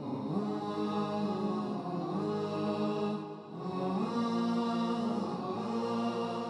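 Opening theme music built on a chanting voice holding long, steady notes, in two phrases with a short dip between them a little over three seconds in.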